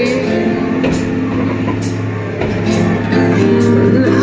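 Rock music with guitar.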